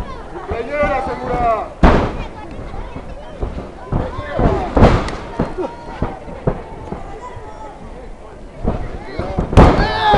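Loud, sharp impacts in a wrestling ring, three in all: about two seconds in, about five seconds in and near the end. Voices shout in between.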